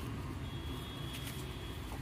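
Low, steady motor-vehicle hum, with a faint thin high tone in the middle.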